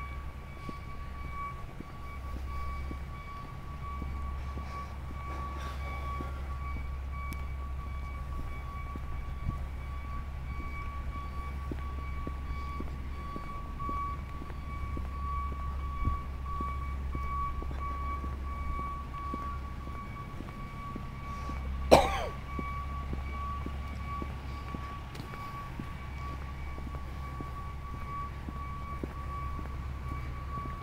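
Outdoor walking ambience: a steady low rumble under a thin steady high hum, with one sudden loud, short sound about three-quarters of the way through.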